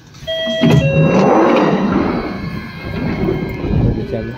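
London Underground train's doors opening: a two-note chime, the second note lower, then the doors slide open with a loud rush of noise.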